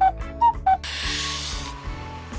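Background music with an editing sound effect: three quick pitched blips in the first second, then a whoosh.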